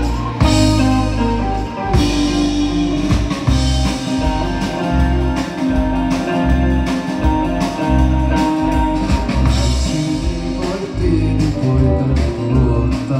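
Live rock band playing amplified through the PA: drum kit, electric bass and electric guitar with a steady beat.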